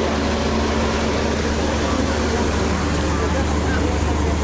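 Boat engines running with a steady low hum under an even hiss. A higher steady tone in the hum drops out about halfway through.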